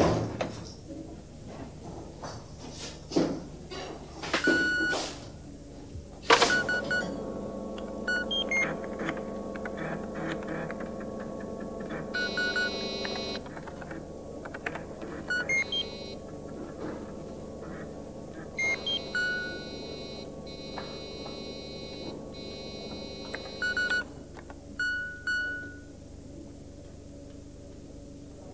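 Electronic beeps and bleeps from a computer terminal as records scroll on its screen, over a sustained synthesizer chord that stops about four seconds before the end. A few knocks and clicks come in the first six seconds.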